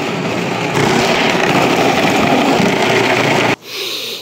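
Cuisinart food processor running, its shredding disc grating a block of cheese pushed down the feed tube. The sound is steady and cuts off about three and a half seconds in.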